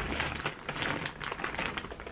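Plastic crinkling and crackling as hands rummage in a large bag of individually wrapped Airheads candies: a rapid, irregular run of small crackles.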